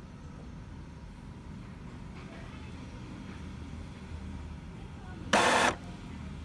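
Epson L3110 inkjet printer running its head-cleaning cycle, a low steady mechanical hum. About five seconds in, a short, loud burst of noise cuts through for under half a second.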